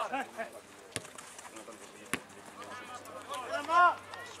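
Players shouting on an outdoor football pitch: short calls at the start and a loud one near the end. Two sharp knocks about a second apart in the middle, typical of the ball being kicked.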